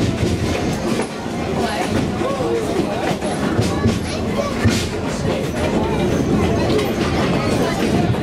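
Strasburg Rail Road passenger train rolling steadily along the track, heard from inside an open-sided coach, with indistinct passenger chatter over it.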